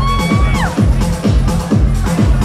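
Electronic dance music from a live DJ set over the PA, with a steady kick drum about two beats a second. A held synth-like note rises, holds and falls away over the first half-second or so.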